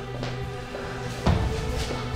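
Background score of sustained, held tones, with a single thump about a second and a quarter in.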